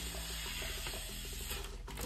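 Breath blown through a drinking straw into the valve of a foil number balloon, a steady fine rattling hiss as the foil fills, stopping about one and a half seconds in.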